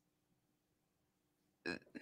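Near silence: room tone, broken near the end by a short vocal sound from a person.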